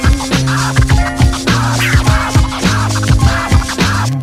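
Instrumental hip hop beat, with kick drum hits, a held bass line and turntable scratching.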